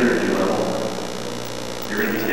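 A steady electrical mains hum fills a pause in a man's talk; his voice trails off in the first half second.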